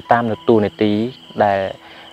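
A man speaking in Khmer, with a steady high-pitched insect drone behind the voice that carries on through his pauses.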